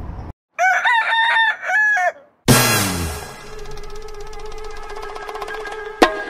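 A rooster crowing, one cock-a-doodle-doo call that starts about half a second in and lasts under two seconds. Then, about two and a half seconds in, a loud musical chord starts suddenly and rings on, slowly fading.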